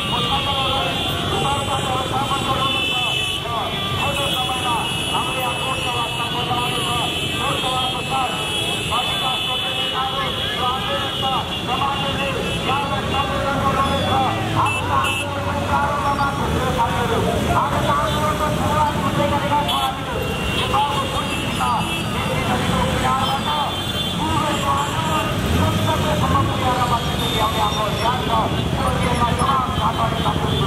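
Many motorcycle engines running and revving together as a dense mass, mixed with crowd voices shouting.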